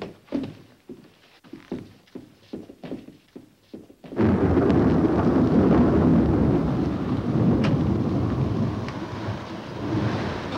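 Scuffling footsteps and knocks on a wooden staircase, then thunder starts suddenly about four seconds in and rumbles on loudly.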